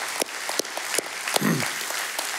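Church congregation applauding, many hands clapping at once, with one short falling voice call about one and a half seconds in.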